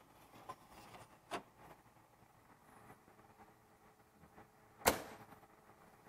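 Faint plastic clicks as the hole-punch waste container is pushed back into a Xerox office finisher, then one sharp knock near the end as the finisher's front door is shut.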